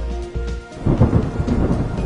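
A clap of thunder breaks in just under a second in and rumbles on, with rain and background music underneath.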